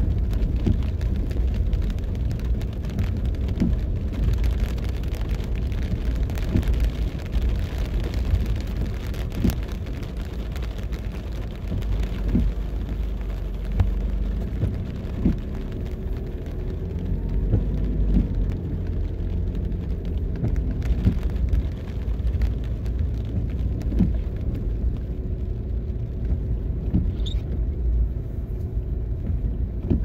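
Car driving slowly, heard from inside the cabin: a steady low rumble of engine and tyres on the road, with scattered light knocks and rattles.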